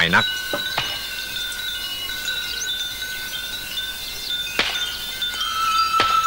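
Chimes ringing: light metallic strikes, one about a second in and another near five seconds, leaving long, steady, high ringing tones that overlap.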